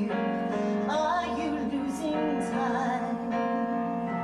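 A woman singing with piano accompaniment, holding long notes with vibrato.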